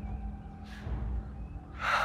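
A man's sharp, noisy breath near the end, with a fainter breath earlier, over soft sustained background music.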